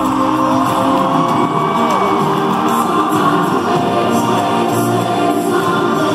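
A live band playing with a singer holding long, gliding notes, heard from far back in an arena.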